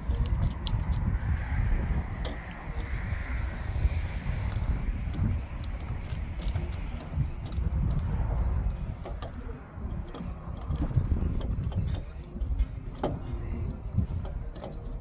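Small clicks and rustles of electrical cable and a plastic junction box being handled as the cable is fed through a grommet, over a low, uneven rumble.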